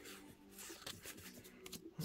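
Faint handling of Pokémon trading cards: soft rustle and light clicks as cards are slid through the hand, with a faint steady tone underneath.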